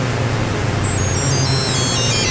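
Electronic ambient synthesizer music: a dense hissing wash over a low drone, with a cluster of high tones stepping down in pitch together.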